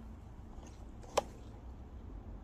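Hand pruning shears snipping through a thin olive shoot: a single short, sharp click about a second in.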